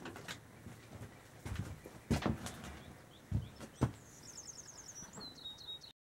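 A few dull knocks and thumps as a person gets up from a chair and moves about, followed near the end by a small bird's quick high trill of repeated notes, then a second, lower trill.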